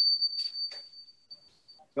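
A thin, steady, high-pitched tone that fades out about a second and a half in, with a few faint clicks, in a gap between voices on a video call.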